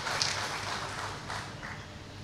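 Hall room noise picked up through the speaker's microphone during a pause: a steady hiss with a few faint, brief indistinct sounds.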